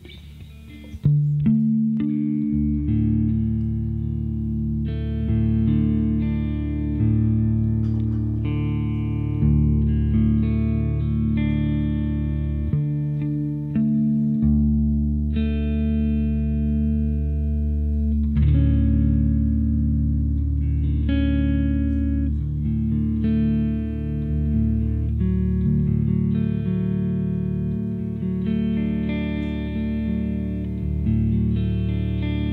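Electric guitar fretted to a 22-note-per-octave tuning drawn from the harmonic series, playing a slow piece on a roughly pentatonic scale. Notes ring long over sustained low bass tones. The playing starts suddenly about a second in.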